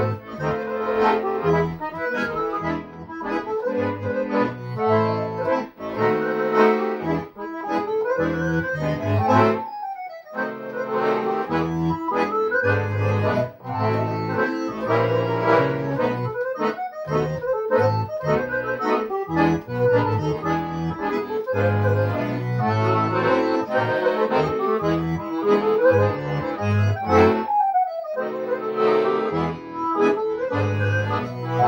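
Piano accordion music, played on a Roland digital accordion: a busy folk melody over a pulsing bass-and-chord accompaniment, with quick runs sliding down the keyboard about nine seconds in and again near the end.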